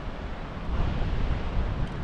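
Wind buffeting the microphone outdoors: an uneven, gusting rumble of noise, heaviest in the low end.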